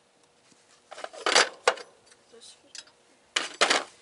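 Metal clinking and rattling in two short bursts, about a second in and again near the end, as metal parts and tools are handled while an engine pulley is swapped.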